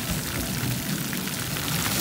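Splash-pad fountain jets spraying water up from the ground and pattering back down onto the wet surface, a steady rain-like hiss.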